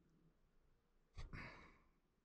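Near silence, broken a little over a second in by a soft knock and then a short breathy exhale, like a sigh, that fades within about half a second.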